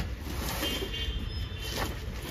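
Steady low rumble of vehicle noise, with a single short knock near the end.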